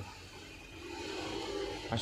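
Ballpoint pen scratching on notebook paper while writing numbers, a faint, even scratchy sound.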